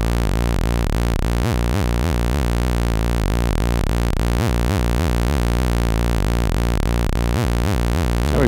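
Doepfer A-110 analog VCO sounding a steady low drone, its pitch periodically warbled by a saw-wave LFO fed through an A-131 exponential VCA whose gain is swept up and down by a second, slower LFO. The warble comes in clusters about every three seconds and dies away in between.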